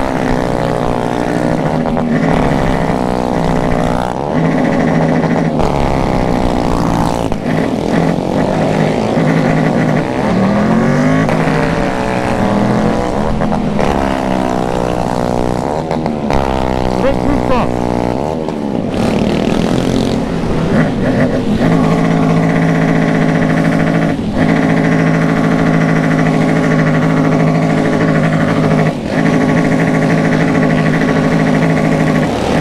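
Motorcycles in a group ride, the nearest being the rider's own Tiger, revved over and over. The engine pitch climbs and drops many times through the first twenty seconds, then settles into steadier running with several engines together.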